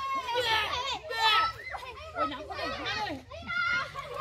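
A group of young girls shouting and cheering together, several high-pitched voices overlapping without a break.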